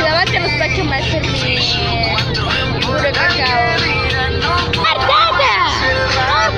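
Many voices chattering loudly over the low engine drone of a moving vehicle; the drone shifts about five seconds in.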